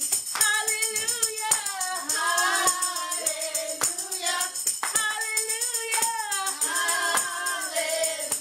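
Handheld tambourine struck and jingled about twice a second in time with a woman singing a gospel song.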